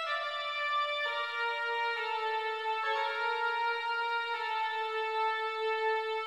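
Viscount Chorale 8 digital organ playing a slow, soft passage: sustained notes in the middle and upper register with no bass, moving to a new note about once a second, then a long held note over the last couple of seconds.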